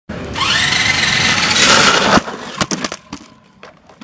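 Small electric RC touring car accelerating on concrete: a motor whine that climbs in pitch over rough tyre noise, cut off by a sharp knock about two seconds in, then a few clicks and rattles.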